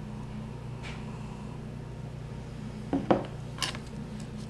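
A pint glass set back down on a table: a few short knocks and clinks about three seconds in, over a steady low room hum.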